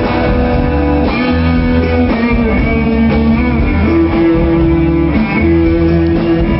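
A live rock band playing an instrumental passage with guitar to the fore over bass and drums, loud and steady, recorded from the audience.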